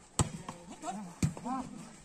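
A volleyball struck hard twice: a sharp slap about a fifth of a second in as the ball is spiked, then another hit about a second later as it is played on the other side. Spectators' voices call out between the hits.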